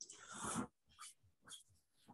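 A short breath out into the microphone, followed by two faint clicks.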